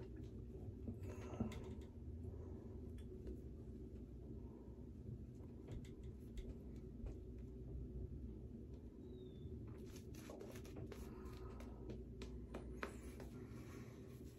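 Shaving brush face-lathering against stubble: faint soft swishing with many small crackling clicks from the wet lather, busiest late on.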